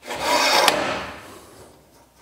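A part sliding along the crosscut fence of a Hammer B3 combination machine, metal scraping on metal. The scrape builds over the first half second, has a sharp click about two-thirds of a second in, then dies away.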